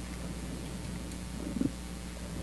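Steady low hum of room tone, with a short low rumble about one and a half seconds in.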